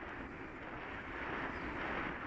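A bicycle rolling along an asphalt path: a steady rush of tyre noise and wind on the microphone.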